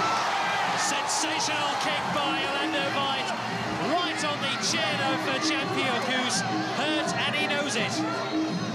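Crowd shouting and cheering during a Muay Thai bout, over continuous music, with a few sharp cracks.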